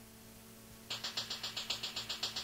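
Quiet hum and hiss of a blank stretch of cassette tape, then about a second in a song's intro begins with a fast, even rattling percussion beat, about seven strokes a second.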